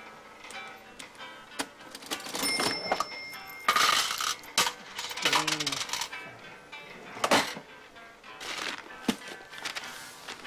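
Old cash register being rung up: keys clacking, a bell ringing for about a second and the drawer coming open, followed by scattered clicks and paper handling as the purchase is bagged.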